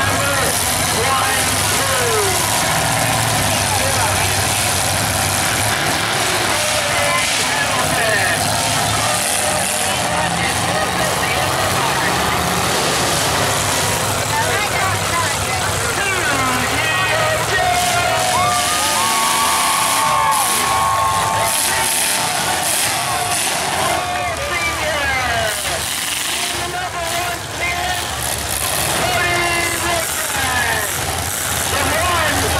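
Demolition derby cars' engines running and revving, mixed with crowd voices and shouting.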